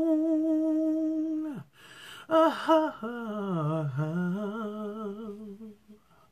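A woman humming a wordless, slow melody with vibrato. She holds one long note, takes a breath, then sings a second phrase that dips low and rises again before trailing off near the end.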